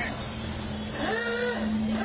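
Vintage open-top car's engine running with a steady low hum as the car pulls away, with people's voices nearby.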